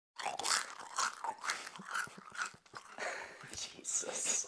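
A person biting and chewing something crunchy: irregular crunches throughout, mixed with muffled voice sounds.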